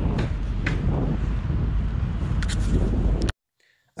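Steady low rumbling outdoor street noise, with wind on the microphone, cutting off abruptly a little after three seconds in.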